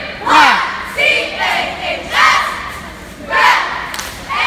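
A cheerleading squad shouting a cheer in unison, one loud call about every second, with the crowd yelling along.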